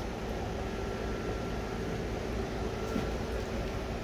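Steady background hum and hiss with a faint steady tone, no distinct events.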